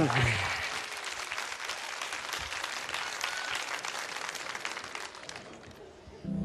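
A large audience applauding, a dense steady clapping that dies away in the last second or so.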